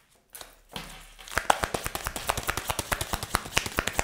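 Tarot cards being shuffled in the hands and laid down on a table: a quick run of small sharp clicks and slaps that starts about a second in.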